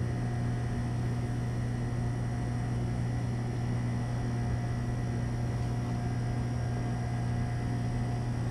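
Steady low background hum with a few faint steady higher tones over it, unchanging throughout, of the kind made by mains-powered equipment or ventilation.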